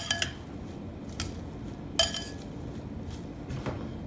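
Stainless steel salad tongs clinking against a glass mixing bowl while tossing salad, with about five sharp clinks over a low rustle of lettuce. The loudest clinks come at the start and about two seconds in, the second with a brief glassy ring.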